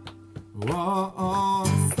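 Live acoustic song with a steel-string acoustic guitar and singing. It opens on a short near-pause, then the singing voice comes back in well under a second in, with guitar strums near the end.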